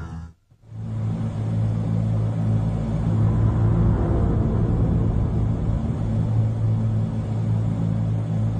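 A brief drop to silence, then a steady low rumbling drone with a deep hum: a soundtrack sound bed under space animation.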